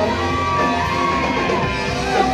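Live rock band playing loudly: electric guitars, bass and drums, with a long held note that bends downward near the end.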